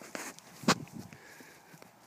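A single sharp knock a little under a second in, among faint rustling and a few light ticks.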